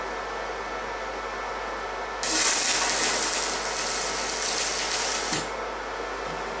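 Stick (MMA) arc welding on a steel-tube frame joint: over a steady low hum, the arc strikes about two seconds in and crackles evenly for about three seconds, then breaks off suddenly with a click.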